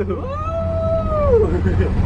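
A person's long high-pitched whoop, rising, held for about a second and falling away, over the steady low rumble of a moving taxi.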